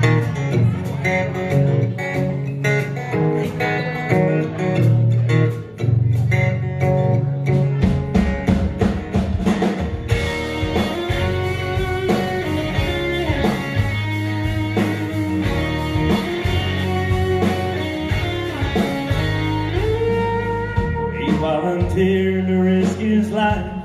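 A live band plays an instrumental passage of a country-rock song on acoustic guitar, electric guitars, bass and drums. Steady drum hits carry the first half, then held guitar notes slide in pitch over the bass line.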